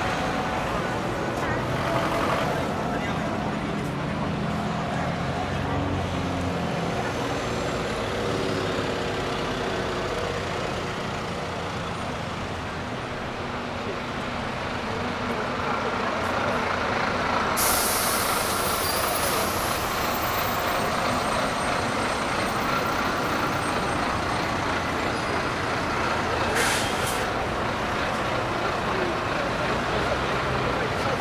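Heavy city street traffic with a large vehicle's engine running, a sudden loud hiss of released air a little past halfway that fades over a couple of seconds, and a shorter hiss near the end.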